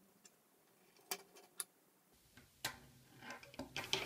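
Plastic K'NEX rods and connectors clicking as pieces are snapped together and handled: a few sharp clicks a little after a second in and again near the end, with small rattles just before the end.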